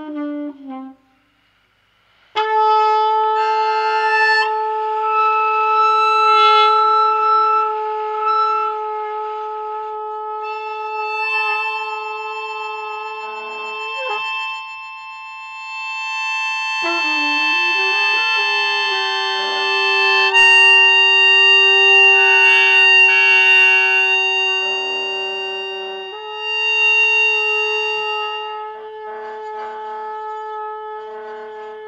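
Improvised trumpet music: a note bending in pitch, then a brief silence about a second in, followed by long held tones that stay steady for several seconds and shift to new pitches a few times.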